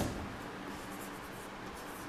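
Chalk writing on a chalkboard: faint, short strokes of chalk against the board as words are written.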